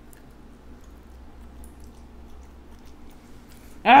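Faint chewing of a piece of boiled baby octopus, with a few soft mouth clicks; a laugh breaks in at the very end.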